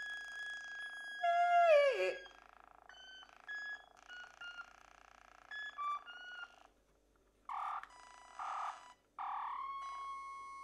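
Experimental electronic music: held tones stepping from note to note, with a loud steep downward pitch glide about two seconds in. After a brief drop-out, short hissing bursts come in, and a single held tone starts near the end.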